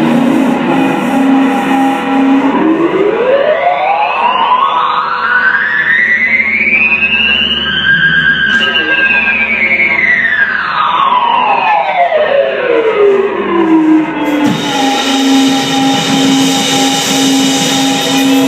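Live rock band, with a sustained electric guitar tone through an effects unit gliding smoothly up in pitch about three octaves over five seconds, then back down over the next six. The full band with cymbals comes back in near the end.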